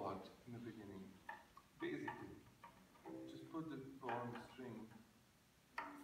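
A person's voice in short, quiet phrases with brief pauses between them.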